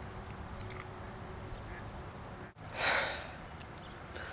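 A short, sharp breath out through the nose, like a scoff or sigh, about three seconds in, over a steady low outdoor background rumble.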